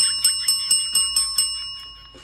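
A red desk call bell struck once by a finger, its ring fading over nearly two seconds. A fast, even ticking, about four or five ticks a second, runs over the ring.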